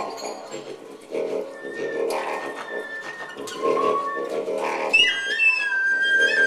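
Free-improvised wind sounds: a low, buzzing drone that swells and fades about once a second, with thin, high whistle-like tones sliding in pitch above it that grow much stronger near the end.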